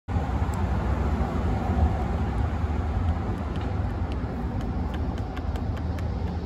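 Steady low outdoor rumble, with a few faint light clicks scattered through it.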